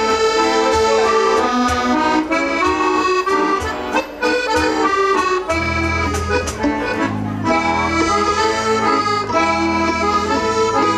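Live folk band playing an instrumental passage led by accordion, with regular percussion strokes. A bass guitar line comes in about five and a half seconds in.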